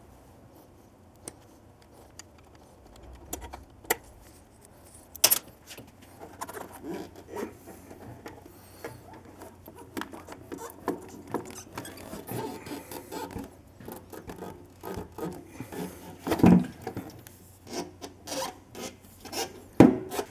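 Fuel tank of a Triumph Street Scrambler being pulled back and shifted by hand: scattered clicks, knocks and rubbing. Sparse at first and busier from about six seconds in, with a louder knock about five seconds in and another near the end.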